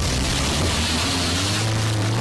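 Toyota Corolla sedan pulling away on a dirt road: the engine note rises in pitch about a second in, over a broad rushing noise.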